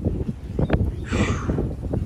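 Wind buffeting the microphone: an uneven, gusty rumble with irregular pops, and a brief hiss a little after a second in.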